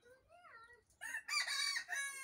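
A rooster crowing once, starting about a second in, with faint higher calls just before it.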